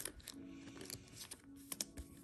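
Faint plastic rustling and small clicks as a trading card is slid into a soft plastic penny sleeve. A few sharper clicks come near the end.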